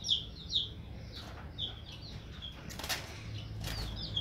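Java sparrow in a wire cage giving short, high chirps about every half second, with two brief flutters of wings near the end as it hops off its perch.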